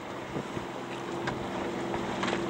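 A boat's engine hum comes in about half a second in and runs steadily, over wind and water noise.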